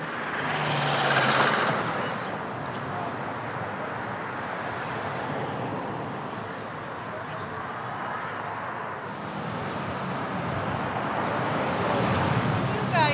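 A car passing by on a town street, swelling and fading about a second in, then steady road traffic noise. Near the end a slow-moving SUV's engine hum grows louder as it pulls up close.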